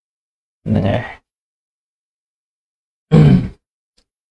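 A man's voice making two short utterances, each about half a second long and a little over two seconds apart, with dead silence between them.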